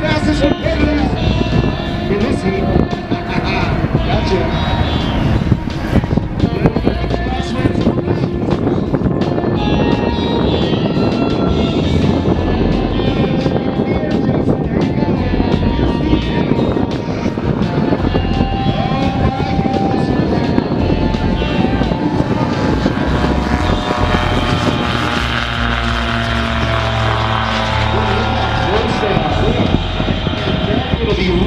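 Light single-engine bush planes' piston engines and propellers running at high power as they race by, with voices and music in the background. Near the end the engine pitch slides as the planes pass.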